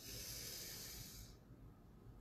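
A woman's deep breath in, a soft airy hiss lasting just over a second before fading, taken as part of a Kundalini yoga breathing exercise.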